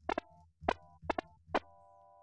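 Ableton Operator FM synthesizer playing about six short, plucky notes from a randomized macro preset. Some notes ring on briefly with a steady tone, the last one longest.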